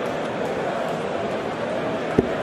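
Steady room ambience: an even hiss with no distinct events.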